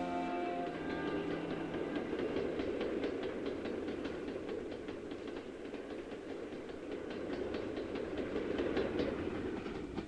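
A Pacer diesel railbus running along the track: a steady engine and wheel rumble with faint regular clicks of the wheels over the rail joints, growing a little louder as it comes closer near the end. Background music fades out in the first second or so.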